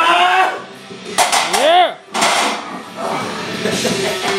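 A loaded barbell clanking down into a steel bench-press rack about a second in, among shouting voices and a loud rising-and-falling yell.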